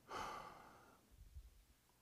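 A faint sigh, a single breath out that fades over about a second, followed by near silence.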